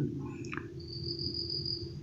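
A faint, steady high-pitched tone that sets in a little under a second in and holds, over a low steady hum.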